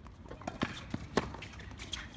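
Tennis ball bouncing on a hard court: a few sharp, separate knocks, the loudest just past a second in.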